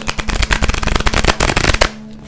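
A deck of tarot cards being shuffled: a fast, dense crackle of cards flicking against each other that stops just before the end.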